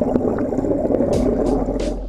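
Water jetting and bubbling into a boat's livewell, heard through an underwater camera: a dense, steady churning.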